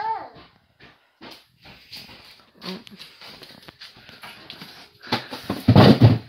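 A dog whimpering amid scattered light knocks and clicks, then a louder rumbling clatter near the end.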